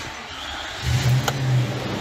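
Nissan NV van's V8 engine starting: a short crank, then it catches a little under a second in, revs up and drops back toward idle.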